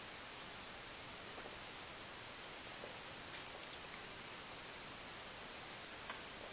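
Quiet room tone: a steady, faint hiss with no distinct sounds.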